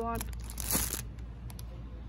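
Plastic wrapping on a stack of disposable cups crinkling as it is handled, a rustle of about a second near the start with a sharp click in it, followed by a few light clicks.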